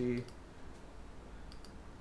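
A computer mouse being clicked: a couple of faint, short clicks about one and a half seconds in.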